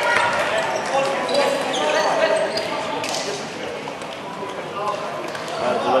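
Indistinct voices of players talking and calling in a large, echoing gymnasium, with occasional rubber dodgeballs bouncing on the wooden court.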